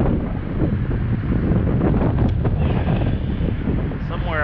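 Wind buffeting an action camera's microphone outdoors, a heavy, uneven low rumble.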